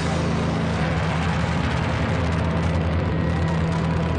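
Loud live rock band playing, heard from the audience's side, with a steady low note held underneath.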